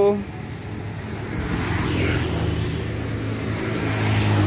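Roadside traffic noise: a steady low hum with a passing vehicle that grows louder from about a second in.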